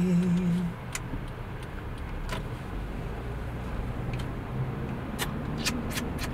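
Interior noise of a moving Honda car: a steady low road and engine rumble, with a few faint clicks.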